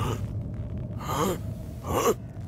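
A gruff old man's voice giving short gasping "ah" cries, one about a second in and another near the end, over a low steady hum.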